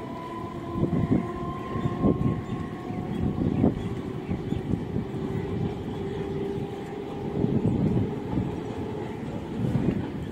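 Suburban electric multiple-unit (EMU) local train pulling away over the junction tracks. Its wheels knock sharply over points and rail joints, a few times early on and again near the end, over a steady running rumble and a thin, level electric whine.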